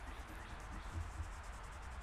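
Faint rubbing of a microfiber cloth worked back and forth over a chrome golf iron head, buffing polish and surface rust off the metal, with soft handling bumps.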